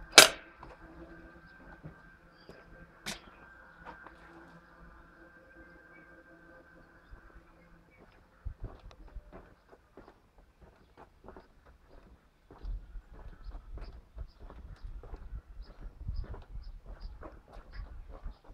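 A sharp snap as the hinged lid of an outdoor weatherproof wall socket is flicked shut, then a fainter click about three seconds later, over a faint steady hum that stops about halfway. After that, irregular footsteps on a concrete path.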